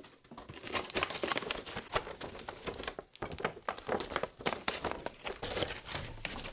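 Clear thin plastic packaging window crinkling and crackling as it is worked out of a cardboard toy box, with dense, irregular sharp crackles throughout.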